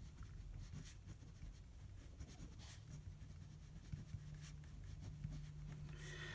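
Faint scratching of a pen writing on paper, in short strokes at an irregular pace.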